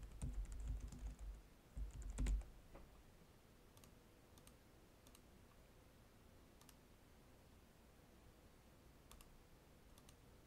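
Typing on a computer keyboard in a short quick flurry during the first couple of seconds, followed by a few single mouse clicks spread out over the rest.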